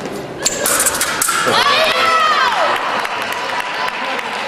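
Sabre blades clashing in a quick run of sharp metallic clicks, then a fencer's loud shout that rises and falls in pitch as a touch is scored.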